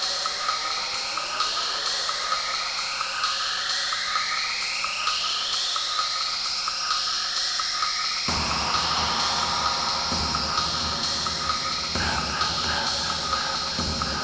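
Techno in a breakdown: a steady ticking hi-hat pattern under a run of repeated rising noise sweeps, with no bass. A little past halfway the bass and kick come back in.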